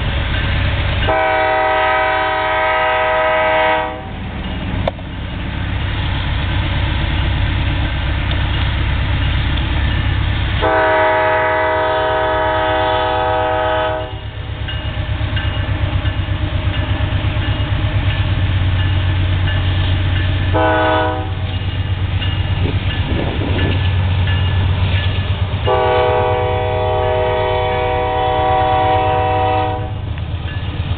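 Norfolk Southern diesel freight locomotives pulling hard under load, a steady low rumble, while the lead unit's air horn sounds the grade-crossing signal: two long blasts, a short one, then a final long one.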